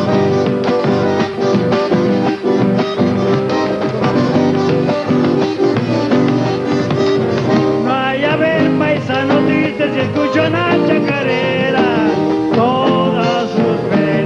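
Live folk band playing a chacarera: strummed acoustic guitar and drum in a steady rhythm. A gliding high melody line joins about eight seconds in.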